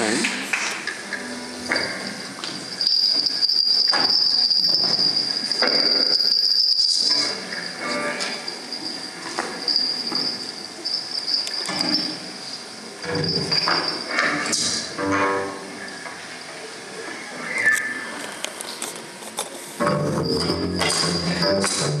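Live concert sound between songs: scattered stage noises and audience voices under a steady high whistling tone, then the band's music comes in loudly near the end.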